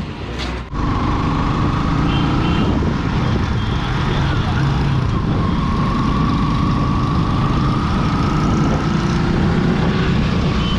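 Bajaj Pulsar NS200 motorcycle's single-cylinder engine running at a steady cruise while riding, with wind and road noise. The engine note eases and picks up again slightly.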